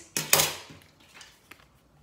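Two sharp taps in quick succession right at the start, then quiet room tone.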